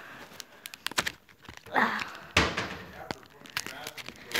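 Foil wrapper of a Pokémon trading card booster pack crinkling and tearing as it is ripped open: a run of short crackles, with a couple of longer rips about two seconds in.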